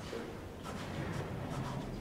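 Faint scratching and rustling over the low, steady hum of a quiet lecture room.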